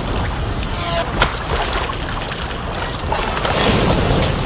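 Surf and churning sea water with a few sharp cracks of gunfire, the sharpest about a second in, then a louder rush of water as a burst of spray goes up near the end.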